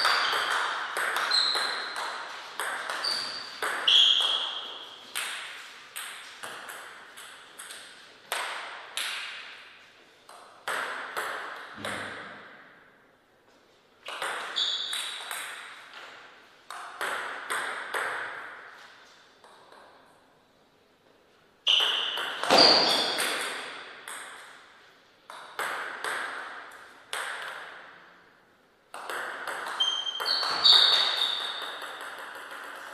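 Table tennis rallies: the plastic ball clicking in quick alternation off rubber paddles and the table, with a short echo after each hit. Several rallies are separated by brief lulls between points.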